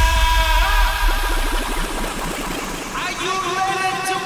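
Electronic dance music from a live DJ mix. The kick drum and bass fade out about a second and a half in, leaving the high melodic lines, and a new melodic phrase enters about three seconds in.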